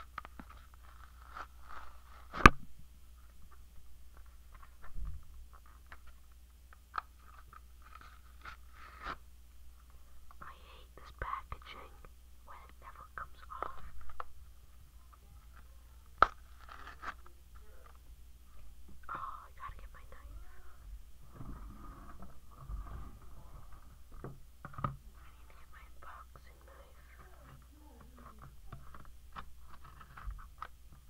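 Cardboard-and-plastic blister packaging being peeled and pulled apart by hand: crinkling, scraping and a few sharp clicks, the loudest about two seconds in. Soft whispering comes and goes through it.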